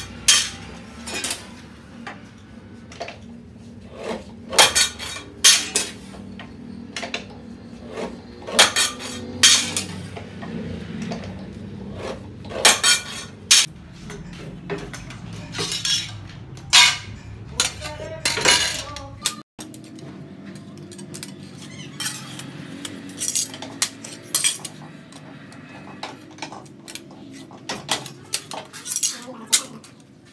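Cut pieces of thin sheet steel clanking and clattering as they are handled and stacked: irregular sharp metallic clanks, each with a short ring.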